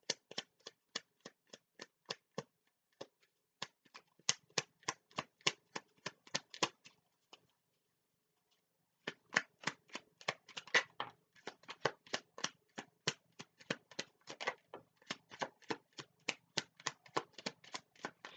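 A deck of tarot cards being shuffled by hand, a quick run of crisp card slaps about four or five a second. The slaps pause for about a second and a half around the middle.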